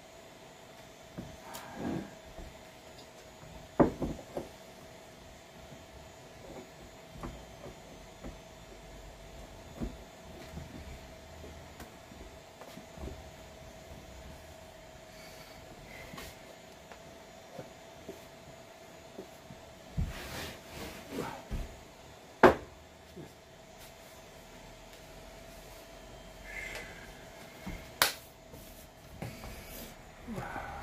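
Handling noises at a wooden worktable while it is wiped with oil: a rag and a tin of wood oil being handled, with scattered sharp knocks and clicks. The loudest come about four seconds in, twice around twenty seconds and near the end. A faint steady hum runs underneath.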